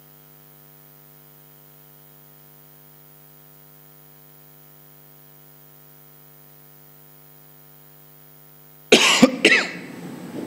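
Steady electrical hum from the microphone and sound system, several even tones held without change. About nine seconds in, a sudden loud cough close to a microphone.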